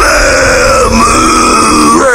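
A person's long, drawn-out guttural vocal noise held for about two seconds without a break, rough in texture and steady in pitch.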